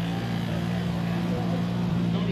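Škoda Fabia rally car's engine idling with a steady, even hum, with faint crowd voices behind it.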